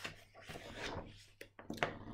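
Pages of a large picture book being turned by hand: soft paper rustling, with a couple of short clicks near the end.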